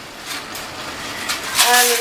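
Tomato sauce cooking in a pan on a gas stove on high flame: a soft, steady hiss with a couple of faint pops. A voice starts near the end.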